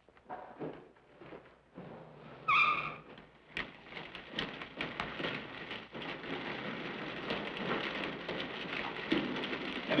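Scuffs and knocks of men climbing down into a storm drain, with a sharp metallic clank that rings briefly about two and a half seconds in. From about four seconds on comes a steady hiss of water running in the drain tunnel, with small splashes and knocks.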